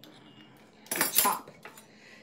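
Metal kitchen utensils clattering twice in quick succession about a second in.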